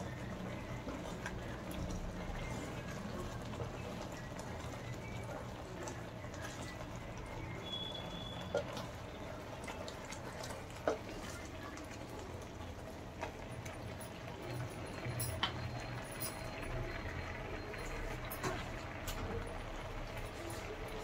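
Thick pumpkin halwa bubbling in a pan on the stove, with steady plopping and a few sharp pops as bubbles burst.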